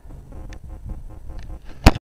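Handling noise from a phone camera being swung and gripped, a low rumble with a few faint ticks, ending in one sharp, loud knock shortly before the end.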